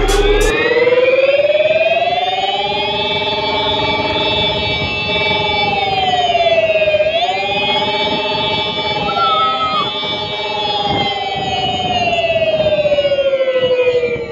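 Ola S1 Pro electric scooter accelerating hard: a whining drive tone with several overtones rises in pitch as it gathers speed, dips sharply about seven seconds in, climbs again, then falls steadily as the scooter slows near the end.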